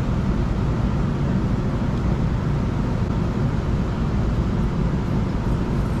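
City street traffic noise, a steady low rumble with no distinct events.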